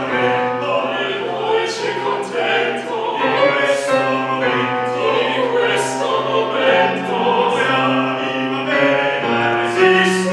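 Several opera singers singing together in an ensemble, the words' 's' sounds cutting through the held notes.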